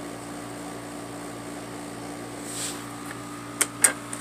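Steady low hum and hiss, then two sharp clicks close together near the end as the lid of a portable DVD player is unlatched and opened.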